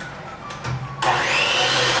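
Electric hand mixer running, its beaters working flour into cake batter in a plastic bowl; it gets louder about a second in.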